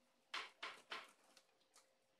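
Thin plastic bag sheet rustling in three short bursts in the first second as sticky tape is pressed down over a fibreglass kite spar, then only faint ticks.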